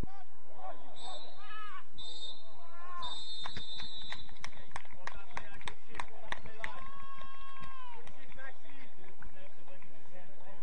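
Referee's whistle blown three times, two short blasts then one long, the full-time signal, over distant players' shouts. A run of sharp claps follows, and a long held shout comes near the end.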